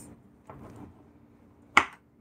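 A kitchen knife cutting through a papaya and knocking once, sharply, on a bamboo cutting board near the end.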